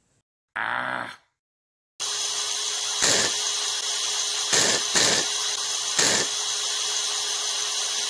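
Electric drill whirring steadily from about two seconds in, swelling louder briefly four times. Before it comes a short pitched sound, with silence on either side.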